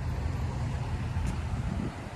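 Steady low rumble of road traffic from cars on the street beside the camera, with no sharp events.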